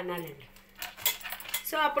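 A few light metallic clinks of a stainless steel plate and steel tongs knocking as the plate of corn kernels is handled.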